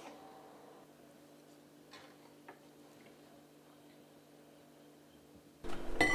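Quiet kitchen with a low steady hum and a few faint light clicks, then a sudden louder clatter of dishes and cutlery with ringing tones near the end.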